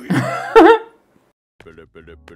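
A man's short, loud burst of laughter that breaks off after about a second, followed by faint audio of the cartoon episode near the end.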